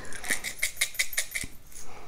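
Very coarse sea salt being shaken out of a small bottle into a hand: a quick run of dry rattling clicks, about seven a second, that stops about one and a half seconds in.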